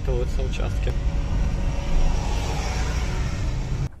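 Steady low rumble of a motor vehicle, with a hiss swelling and fading around the middle.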